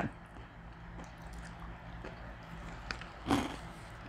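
Quiet chewing of crunchy baked cheese crisps: faint small crackles over a low steady hum, with one short louder crunch a little over three seconds in.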